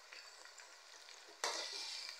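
Chopped onions, tomatoes and green chillies frying in oil in a metal karahi, stirred with a spatula: a low steady sizzle, then a sudden louder burst of frying noise about one and a half seconds in.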